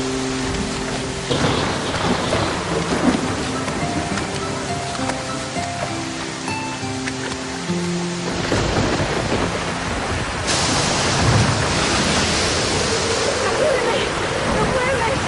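Soft music with held notes, then a rushing noise of heavy rain sets in about eight seconds in and grows louder a couple of seconds later, with a low rumble of thunder.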